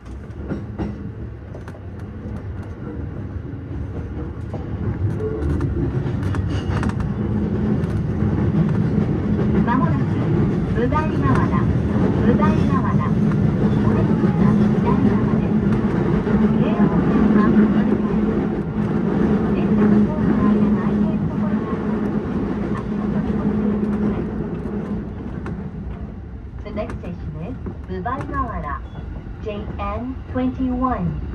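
Running noise of a JR East E233-8000 series electric train heard from the driver's cab, with a steady motor hum. It builds over the first ten seconds or so as the train gathers speed, then eases off in the last part. A muffled voice, an announcement, is heard under it.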